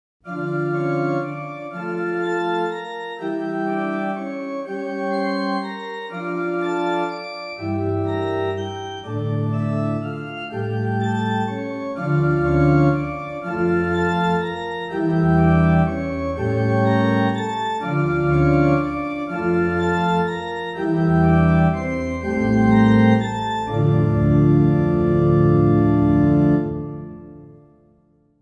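Sampled church pipe organ (ProjectSAM's Organ Mystique virtual instrument, recorded from a church organ in a historic Dutch village) playing a slow progression of sustained chords that change about once a second. Deep bass pedal notes join about seven and a half seconds in, and the final chord fades out near the end.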